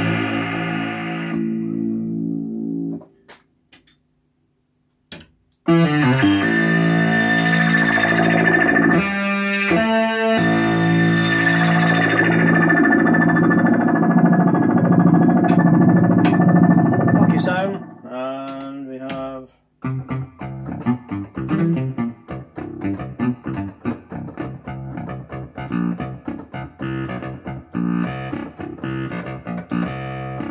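Oberheim OB-SX analog polyphonic synthesizer played through different preset sounds. A held note fades out about three seconds in, and after a short silence a loud sustained sound rings for about twelve seconds. A brief wavering note follows, then a run of quick, short notes to the end.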